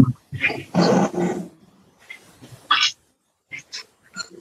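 A dog's voice heard through a video call's microphone: two sounds in the first second and a half, a short sharp sound near the end of the third second, then a few faint scattered noises.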